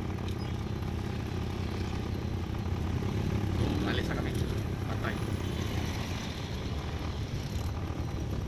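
Steady low rumble of a cargo truck's engine idling, heard from inside the cab, with motorcycles close ahead.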